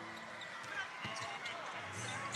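Faint basketball dribbling over a low, steady background haze.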